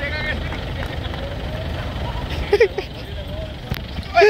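Isuzu D-Max V-Cross pickup's diesel engine idling with a steady low rumble, under people's voices and a short laugh about two and a half seconds in.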